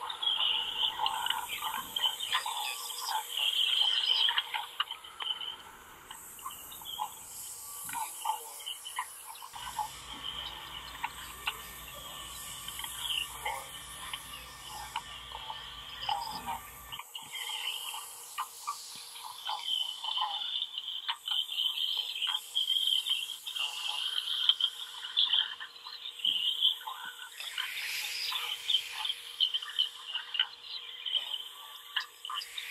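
Improvised experimental vocal performance: dense clicking mouth sounds mixed with held high tones. A low drone joins from about ten to seventeen seconds in.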